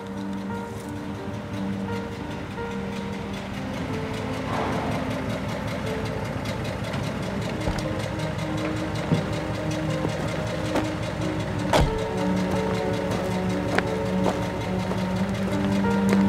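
Orchestral film score with slow held notes over a vintage car's engine running and its tyres rolling on a dirt road as it drives up and stops. A few sharp knocks, the loudest about twelve seconds in.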